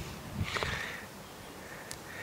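A short breath through the nose about half a second in, then quiet background with a faint click near the end.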